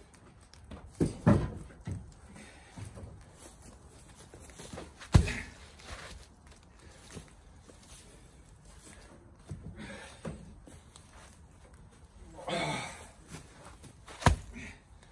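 Heavy oak firewood rounds being pulled out of a pickup bed and handled by hand: a few dull knocks of wood on wood and on the truck bed, the loudest about five seconds in, with footsteps in dry leaves between them.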